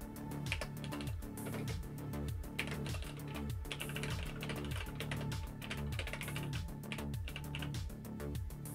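Typing on a computer keyboard, in short runs of keystrokes, over background music with a steady beat of about two beats a second.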